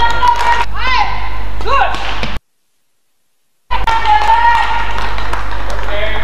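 Badminton rally on an indoor court: sharp squeaks of players' shoes on the court floor and clicks of the shuttlecock being struck by rackets. The sound cuts out completely for just over a second about halfway through.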